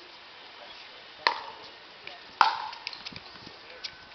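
Pickleball paddles striking a hollow plastic ball: two sharp pocks about a second apart, the second the louder, followed by a few lighter ticks.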